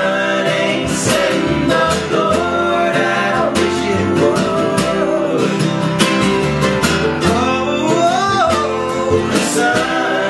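An acoustic folk string band playing live: strummed acoustic guitar, upright bass and mandolin, with voices singing over it. About eight seconds in, a voice slides up and back down.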